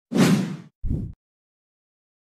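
Edited-in intro sound effect: a whoosh that fades over about half a second, followed by a short, deep thump about a second in.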